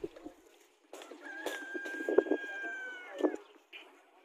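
A rooster crowing once: one long held call of about two seconds that bends down at the end. A few sharp knocks sound around it.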